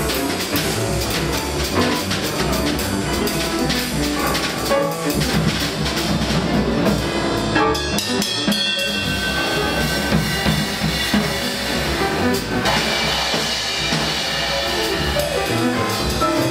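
Free-jazz quintet improvising live: a busy drum kit with dense strokes throughout, under piano, bass, alto saxophone and trumpet, with held higher notes entering about halfway through.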